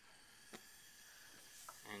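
Near silence: the faint hiss of a Bunsen burner's gas flame just after lighting, with one light click about a quarter of the way in.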